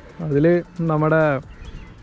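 Speech: a person's voice talking in two short phrases, then pausing about a second and a half in.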